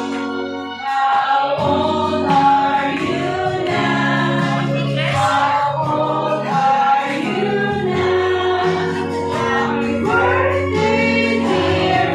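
A group of people singing a song together, led by a woman's voice through a microphone, over instrumental accompaniment with steady held low notes.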